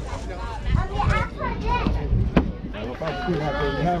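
Indistinct voices of children and adults talking, with one sharp knock a little past halfway.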